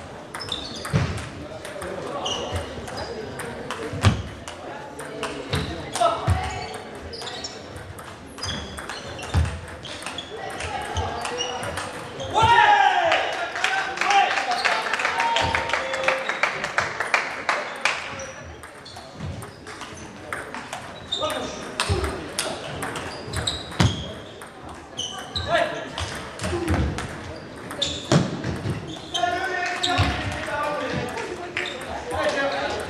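Table tennis balls clicking off rackets and tables in quick rallies in a large echoing hall, with voices talking throughout. A loud voice rises about twelve seconds in and carries on for several seconds.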